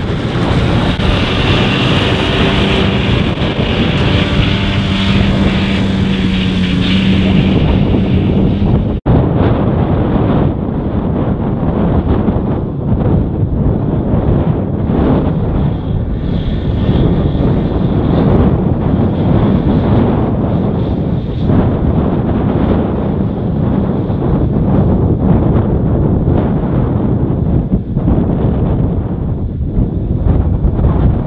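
John Deere tractor engine running steadily while pulling a 1365 trailed mower through grass, with a low hum in the first several seconds. After a break about nine seconds in, the tractor and mower are farther off and largely masked by wind buffeting the microphone.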